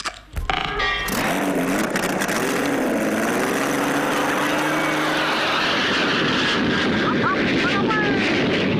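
Aircraft engine sound effect for a small model aeroplane flying through the room: it starts suddenly, then runs as a loud steady drone whose pitch wavers up and down.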